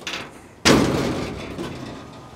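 The steel door of a 1946 Chevy pickup cab being pushed shut: a single loud slam about two thirds of a second in, ringing away over about a second. The door closes fully, showing it still clears the newly welded cab corner.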